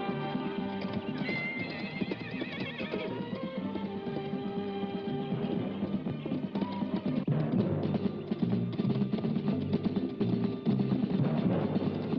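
Western film score music over the hoofbeats of galloping horses, with a horse whinnying about a second in.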